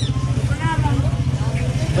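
Motorcycle engine idling steadily with a fast low pulse. A few short high peeps from ducklings sound over it about half a second in.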